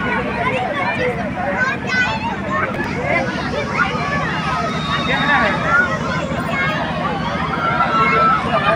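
Many children's voices shouting and chattering over one another in a lively babble, over a steady low hum.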